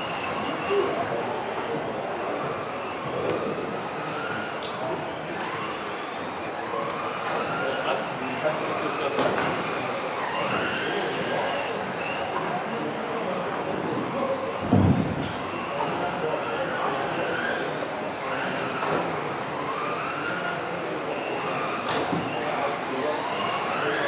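Several electric RC racing cars' motors whining, their pitch repeatedly rising and falling as the cars accelerate and brake around the track, with many whines overlapping. A single thump about 15 seconds in.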